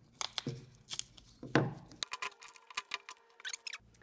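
A taped-down stencil being peeled off and pulled up over the nail heads of a small string-art board: crinkling and a series of short, sharp clicks, the loudest about a second and a half in.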